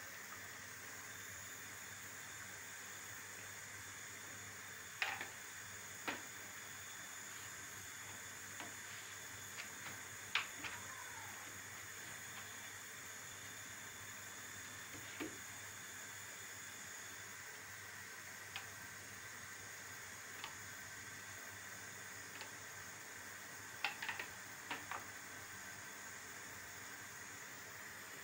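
A faint steady hiss, with a few soft taps and rustles from hands folding thin yufka pastry sheets on a wooden board, the clearest about five, ten and twenty-four seconds in.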